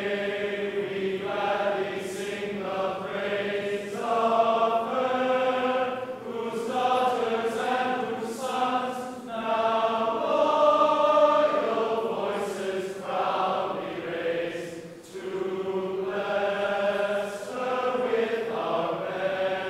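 Many voices singing a slow song together, in long held phrases.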